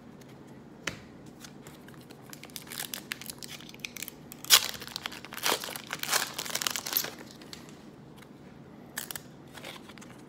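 Foil trading-card pack wrapper crinkling and tearing open by hand. The crinkling builds a few seconds in, with the sharpest tear about halfway, and a last crackle near the end.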